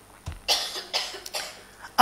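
A person coughing: a few short coughs in the first second and a half.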